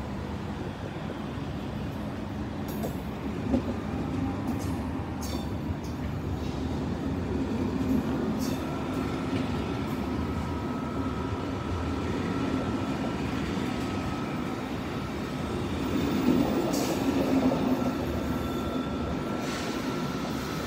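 SNCF passenger coaches rolling slowly past as the train departs, a steady rumble with scattered clicks and knocks from the wheels and couplings. A thin steady whine joins about eight seconds in.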